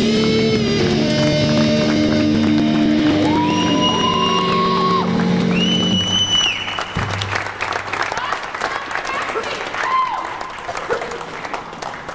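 Live hard-rock band holding the last chord of a song, with sustained electric guitar notes and high rising tones, until it stops about halfway through. Then the audience applauds and cheers.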